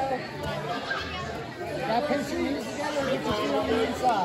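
Speech only: indistinct background chatter of voices, with no other clear sound.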